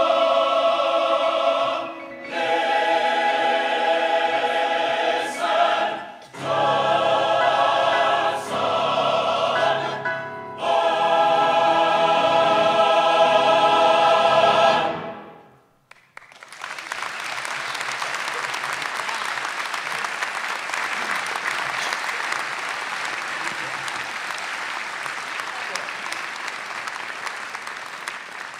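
Mixed choir singing a jubilant song in phrases, ending on a long held chord about halfway through that dies away. After a brief pause, an audience applauds steadily, slowly fading.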